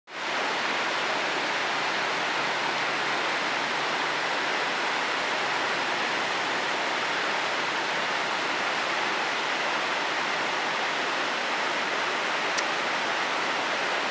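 Steady rush of flowing water, an even hiss at constant level, with one brief high tick near the end.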